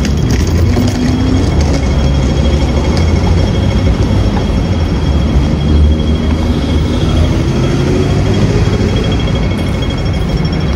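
Street noise with a heavy, steady low rumble, and over it the rapid high-pitched ticking of a pedestrian crossing signal that runs on throughout.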